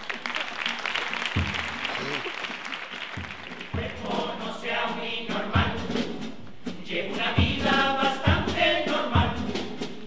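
Audience applause over the first few seconds, then a men's carnival chirigota chorus singing together, backed by guitar and a bass drum beating at a steady pace.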